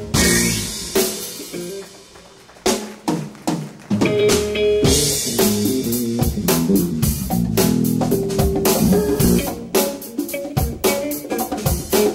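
Live jazz-funk band led by a drum kit, with bass, guitar, keyboards and saxophone. A cymbal crash rings and dies away, a few drum hits follow, and about four seconds in the full band comes in with a steady funk groove.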